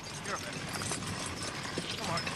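A pair of heavy draught horses pulling a plough, their hooves plodding in an irregular run of soft steps over the ploughed soil.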